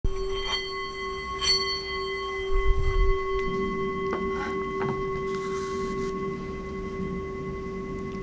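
Metal singing bowl worked with a wooden mallet, ringing with one steady, sustained tone and its overtones. Two sharp taps of the mallet come about half a second and a second and a half in, and the tone rings on after the mallet is put down.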